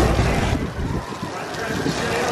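Gerstlauer spinning coaster car rolling along its steel track, a steady rumble with park guests' voices mixed in. It eases off about half a second in and builds again near the end.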